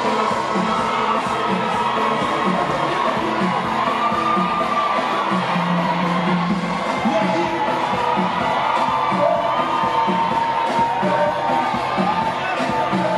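Loud live dance music with a steady beat and held melodic lines, played over a concert sound system, with a crowd cheering and shouting over it.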